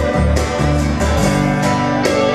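Live rock band playing an instrumental passage: strummed acoustic guitar and electric guitar over bass and drums, with steady drum and cymbal hits.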